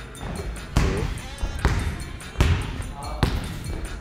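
A basketball bouncing on a hardwood gym floor, four strong bounces less than a second apart.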